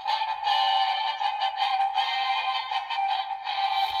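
Music playing through the tiny speaker of a miniature novelty TV, thin and tinny with no bass.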